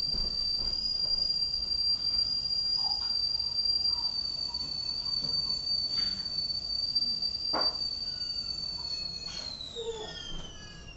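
Kettle whistling at the boil: one steady high whistle that slides down in pitch and fades near the end, with a couple of faint knocks along the way.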